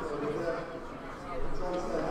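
A man speaking into a handheld microphone, with a short pause about a second in.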